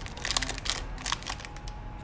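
A thin plastic gummy-candy bag crinkling and rustling as it is handled, with a quick run of sharp crackles in the first second or so that then thins out.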